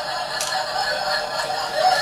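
Cola poured steadily from an aluminium can into a plastic cup, the liquid running and fizzing in the cup.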